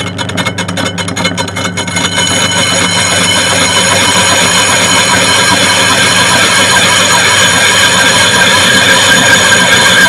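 Metal lathe taking a facing cut across a rusty cast-iron brake disc. The cut starts with a rapid ticking as the tool bites intermittently, then becomes a continuous harsh cutting noise with several steady high ringing tones from the disc, growing louder, over the steady hum of the lathe.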